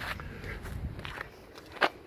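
Footsteps on tarmac as the person holding the camera walks: a few gritty steps, the loudest near the end, over a low rumble in the first second.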